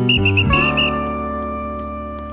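A whistle blown in about five quick, high toots over the first second, on top of a short music cue whose held chord then rings on and slowly fades.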